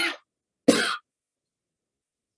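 A person coughing twice, two short coughs under a second apart.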